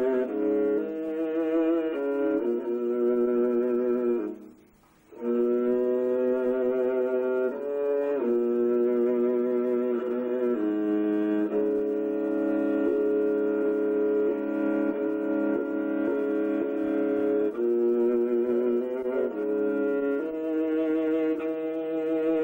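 Kobyz, a Kazakh bowed string instrument, played solo with a bow: long held notes moving from pitch to pitch. There is a short break about four seconds in and a long sustained passage in the middle.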